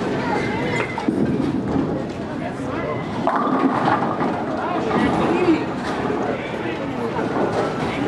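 Indistinct chatter of people in a bowling alley, with a sharp knock about a second in.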